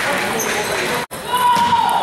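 Table tennis balls clicking on tables and paddles from many tables at once in a large gym hall, with a crowd of voices. The sound cuts out for an instant about a second in, then a short high squeal runs through the second half.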